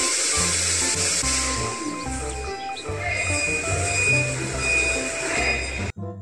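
Background music with a stepping bass line over a steady hissing machine noise from a forklift at work in a warehouse. The noise cuts off suddenly just before the end.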